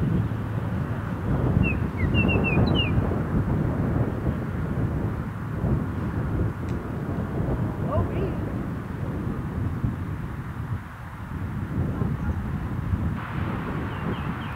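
Wind buffeting and rumbling on an outdoor microphone, steady throughout, with a bird chirping a few times about two seconds in.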